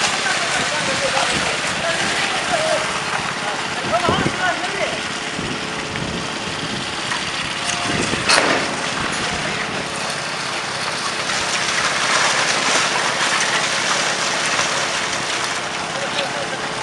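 Construction machinery running steadily during a wet concrete pour, with men's voices calling out over it in the first few seconds and a single sharp knock about halfway through.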